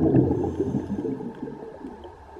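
Underwater bubbling and gurgling of a diver's exhaled air, loud at first and dying away over the first second and a half.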